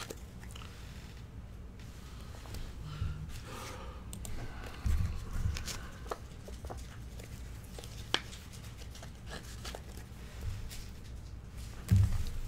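Baseball cards being handled on a desk: faint rustling and sliding of card stock, with a few soft thumps and one sharp click about eight seconds in.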